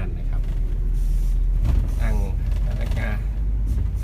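Mercedes-Benz intercity coach driving on the road, heard from inside the cabin at the front: a steady low engine and road rumble.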